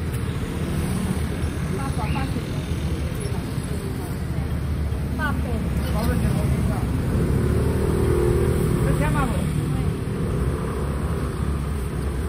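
Street traffic: a steady low rumble of passing motor scooters and cars, with a few short snatches of talk in between.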